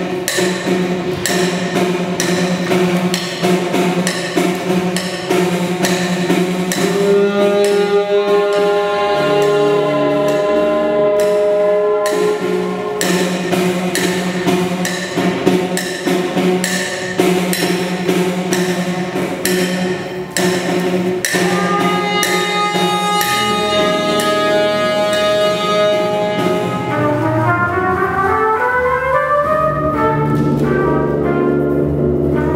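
Live ensemble of brass, saxophones, tuba and drum kit playing: long held horn chords over a steady beat of drum hits. Near the end the horns slide upward together in a long rise.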